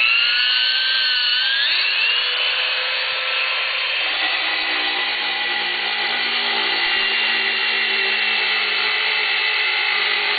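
Troxell 06-3000 variable-speed polisher-grinder driving a diamond core bit, run dry into a stone tile. The motor's whine rises as it spins up over the first two seconds, then holds steady. About four seconds in, lower rough tones join as the bit cuts into the stone.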